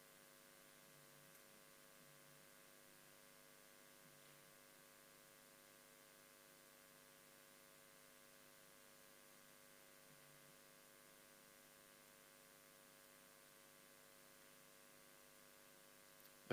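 Near silence, with a faint steady electrical hum.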